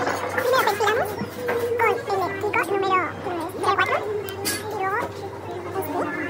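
Women's voices talking and laughing, with lively rising pitch, over a steady low hum of room noise.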